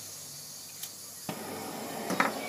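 Faint click, then a soft steady hiss of MAP gas starting about 1.3 seconds in as the valve on a hand-held MAP-X gas torch is opened, before it is lit.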